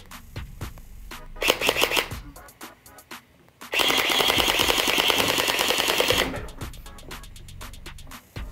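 A DJI RoboMaster S1 robot's gel-bead blaster firing a rapid, gunfire-like burst of about two and a half seconds near the middle. It follows a shorter burst about a second and a half in.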